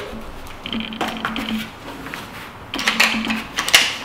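Handling noise: scattered sharp clicks and rustles as ear defenders are fitted over the ears and the hands move to the rifle, with a denser run of clicks in the last second or so.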